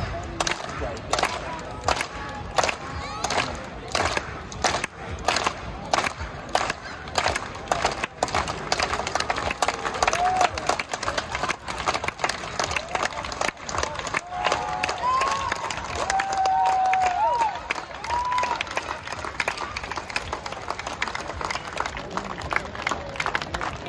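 Large street-show crowd clapping and cheering, with repeated claps at about two a second early on. Scattered shouts rise out of the crowd noise later.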